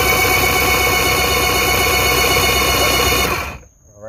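Mercury inline-four two-stroke outboard turned over on its electric starter without firing: the starter spins up, holds a steady whine, and stops about three and a half seconds in. The engine is being cranked so the ignition timing can be read with a timing light at maximum advance.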